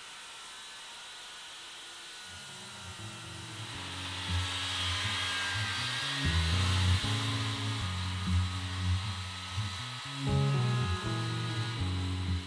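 Circular saw cutting along a thick white oak plank, a steady high whine and hiss. Background music with low bass notes comes in about two seconds in and plays over it.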